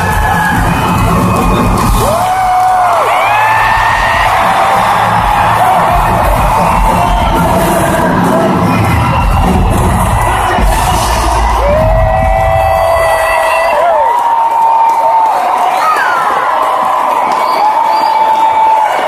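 Live band in an arena playing loud with the crowd cheering and whooping over it. The band's bass and drums stop about three-quarters of the way through, leaving the cheering crowd with high, drawn-out screams.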